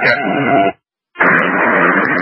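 Two-way fire radio static: the hiss of an open transmission cuts off abruptly under a second in. After a brief silence a new transmission keys up with steady hiss and no words yet.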